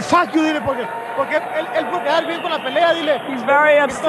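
Speech in Spanish: talking in a post-fight ringside interview, over a steady background of arena noise.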